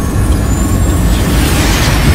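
Trailer sound-design riser: a rushing whoosh of noise that swells from about a second in and builds to the end, over a steady low bass rumble.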